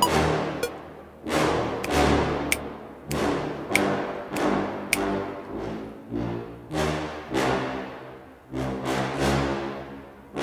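Orchestral cue played back from MIDI sample libraries: brass chords over drum hits, struck again about every two-thirds of a second, each hit fading before the next.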